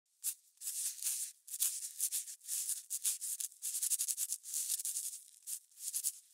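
Scribbling on paper, as the title lettering is drawn: a quick, irregular run of short scratchy strokes.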